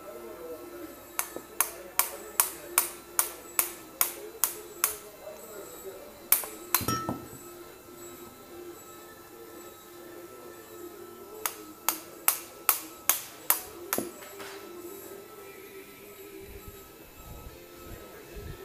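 A metal hand tool striking a freshly cast pewter goblet in quick, sharp metallic taps, about two or three a second. There is a run of about ten taps near the start, two more a little later, and another run of about seven in the second half. The goblet is being worked free of its casting mould.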